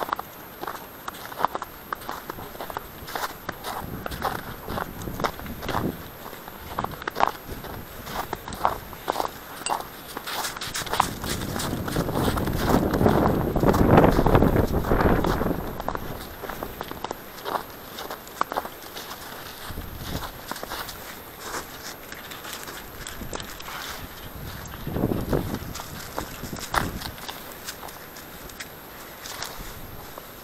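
Footsteps on thin snow and grass at a steady walking pace, each step a short sharp crunch. In the middle comes a few seconds of louder rubbing and rustling close to the microphone, as a gloved hand holding the dog's leash moves against the camera, and a shorter rub follows near the end.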